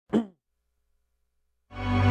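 A brief tone sliding quickly downward in pitch right at the start, then silence, then slow, sustained intro music with a deep bass swelling in near the end.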